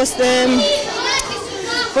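Children's voices chattering and calling out in a large, echoing dining hall, with a woman's drawn-out hesitation sound near the start.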